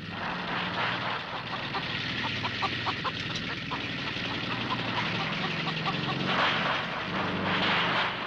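Harsh horror-film soundscape: a dense, noisy drone with a low hum under a stream of short, shrill squawk-like blips.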